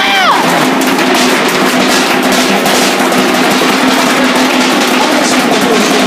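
Loud, fast drumming with a crowd's voices mixed in; a whoop rises and falls right at the start.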